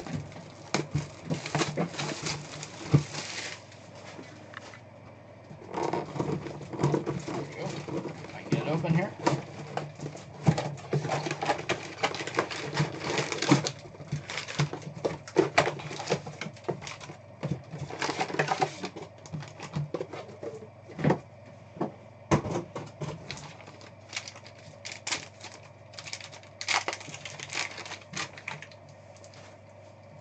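Cardboard box being handled and opened and foil-wrapped trading card packs rustling and crinkling, a dense run of short clicks and rustles with a few quieter pauses.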